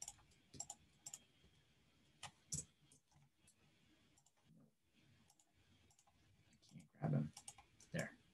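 Faint, irregular clicks from a computer mouse and keyboard, a few clicks at a time with gaps between.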